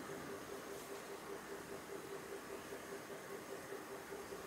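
Quiet room tone: a faint steady hiss with a soft, evenly pulsing low hum.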